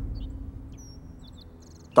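A pause between lines of dialogue: a low, steady background hum that fades down, with a few faint, short high chirps about a second in.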